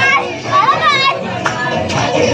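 Excited children's voices shouting and calling out, high-pitched, loudest about half a second to a second in, with a party dance song from a loudspeaker playing more quietly behind them.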